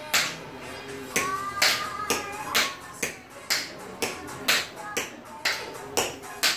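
Recorded electro-swing pop music with a sharp snap on every beat, about two a second, while tap shoes strike a tile floor in time.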